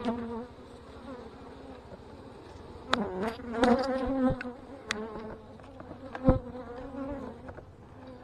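Honey bees buzzing from an opened hive: a strong, populous winter colony, with single bees flying close past and their hums rising and falling in pitch. A few sharp clicks sound through it, the loudest about six seconds in.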